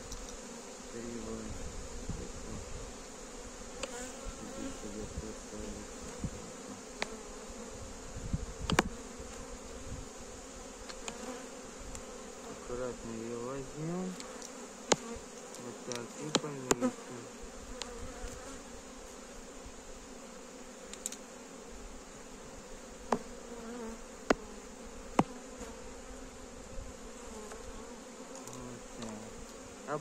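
Honeybees buzzing around an open hive: a steady hum, with single bees' buzz rising and falling in pitch as they fly close past. A few sharp clicks stand out over it.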